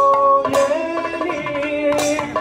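Kathakali accompaniment music: long held melodic notes that move to a new pitch about half a second in, over scattered strokes from the chenda and maddalam drums.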